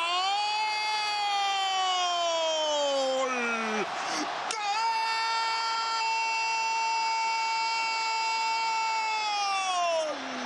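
A football commentator's drawn-out "gooool" goal cry in two long held breaths: the first sliding down in pitch and breaking off about four seconds in, the second held level and falling away near the end.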